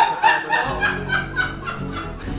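Laughter: a quick run of short snickering laughs that fades after about a second, with music playing underneath.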